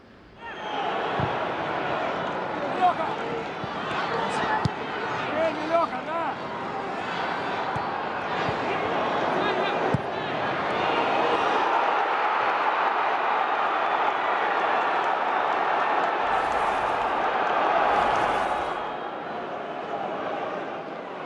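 Football stadium crowd noise, a steady din of many voices, starting suddenly about half a second in and swelling louder later, with a few sharp thuds.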